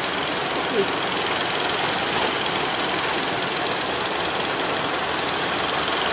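Steady rush of breaking surf with the engines of motor fishing boats running as they come in through the waves.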